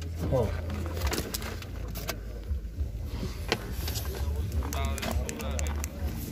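People talking in the background, with scattered light clicks and knocks.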